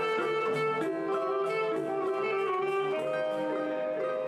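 Small choro ensemble playing live: a saxophone carries the melody in long held notes over plucked acoustic guitar and cavaquinho.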